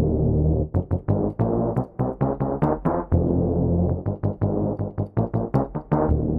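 Xfer Serum software synthesizer playing the "BASS - Lurk Synth" preset: a low synth bass, some notes held and many others struck in quick short repeats.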